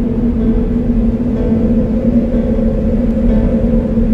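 Slow ambient music: a sustained low droning note held steadily over a deep rumble, with a faint higher chord swelling in near the end.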